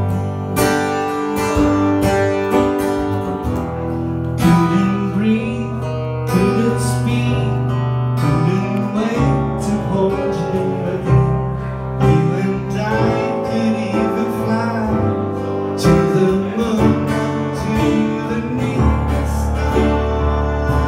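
Acoustic guitar played live, strummed chords and melody notes running on without a break.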